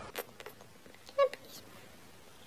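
Domestic cat giving one short, quiet meow about a second in.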